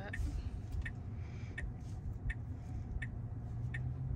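Car turn-signal indicator clicking at an even pace, about three clicks every two seconds, over the steady low hum of the car cabin.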